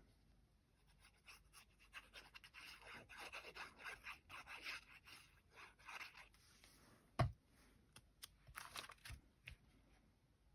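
Faint scratchy squeezing as liquid glue is drawn in scribbles from a fine-tip bottle across card, then a single soft thump about seven seconds in and a little card handling as the glued mat is pressed down.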